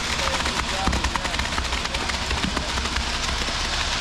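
Wet concrete sliding down a concrete mixer truck's chute into a footer trench, a dense steady crackling and scraping, over the low steady rumble of the truck's engine running.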